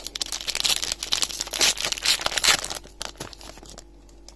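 Foil Pokémon booster pack wrapper crinkling as it is opened, dense crackling that dies down about three seconds in.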